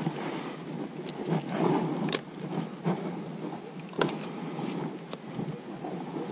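Handling noise as a caught bass is held and unhooked in a plastic kayak: a handful of scattered clicks and knocks over a steady rustling hiss.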